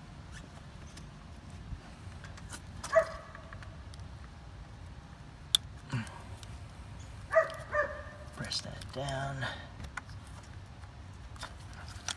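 Electrical connector being pried off a car's ignition coil with a screwdriver, with a single sharp click about five and a half seconds in as it comes free. Several short pitched sounds stand out in the background about three, seven and a half and nine seconds in.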